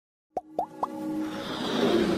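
Animated logo intro sting: three quick, short rising pops about a quarter second apart, then a swell of music that builds.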